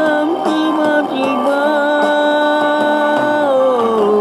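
A Malay pop song from a karaoke video: a singer holds a long 'oh' over the backing music, the note sliding downward near the end.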